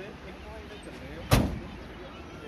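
A single sharp thump a little past halfway through, over faint background voices and a low steady rumble.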